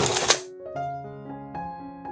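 Metal baking tray scraping and rattling against the oven rack as it is pulled out, a loud clattering burst in the first half second. After it, soft background music with piano-like notes.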